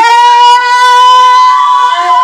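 A voice holding one long, loud, high note, sliding up into it and holding it steady.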